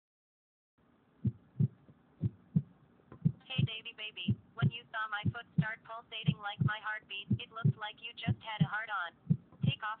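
Heartbeat sound effect: paired low thumps, a lub-dub about once a second, starting about a second in. From about three and a half seconds in, a voice speaks over it.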